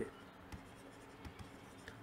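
Stylus writing on a tablet screen: a few faint taps and light scrapes as a word is written out.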